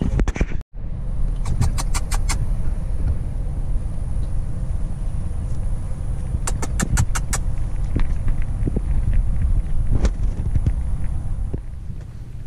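Steady low rumble of a vehicle driving, heard from inside the cabin. Two brief runs of quick, evenly spaced ticks come about a second and a half in and again about six and a half seconds in.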